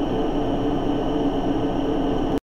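Steady room hum and hiss, even and unchanging, with no distinct events.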